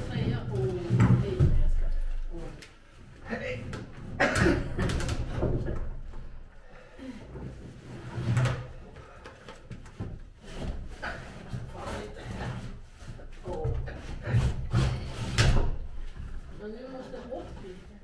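A heavy marine diesel engine, not running, being shoved and levered along wooden planks: repeated wooden knocks and scrapes, with low voices among them.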